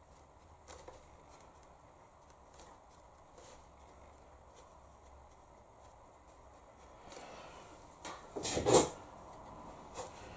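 Faint room tone with a few soft ticks, then a short, loud knock with a rustle about eight and a half seconds in.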